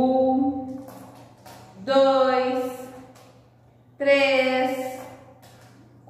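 A woman's voice counting slowly in Portuguese, three long drawn-out numbers about two seconds apart, with faint light clicks between the words from plastic clothespins being pulled off.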